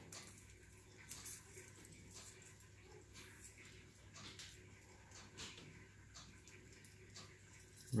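Faint, scattered light clicks of a small metal split ring and chain being handled and threaded.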